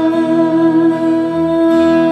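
Live worship band music with long held notes, shifting to a new chord about a second and a half in.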